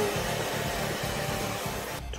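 Handheld hair dryer blowing steadily, aimed at the moulding material on a person's head.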